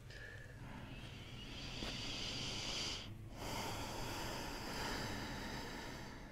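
A woman breathing slowly and deeply through her nose close to the microphone: one long breath, a short pause about three seconds in, then another long breath. She is breathing in a cycle before a neck adjustment that is timed to the end of the breath.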